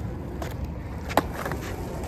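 Skateboard wheels rolling on asphalt with a steady low rumble, and one sharp clack of the board about a second in.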